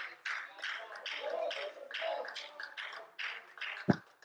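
Quiet, indistinct voice murmuring in a hall, too soft for the words to be made out, with a short low thump near the end.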